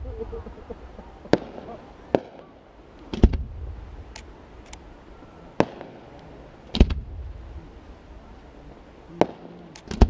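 Aerial firework shells bursting in a display: about seven sharp bangs at uneven intervals, the louder ones trailing off in a brief rumble.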